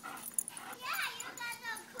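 Small Chihuahua-mix dog yipping and whining in rough play with a larger sighthound: a few short, high calls about a second in and again soon after.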